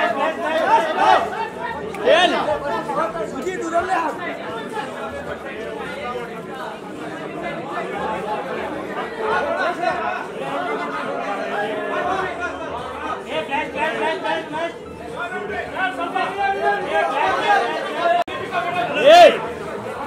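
Many voices talking over one another in indistinct chatter, with one louder call standing out near the end.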